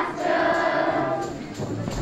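Children's choir singing together; the voices thin out briefly past the middle, then pick up again.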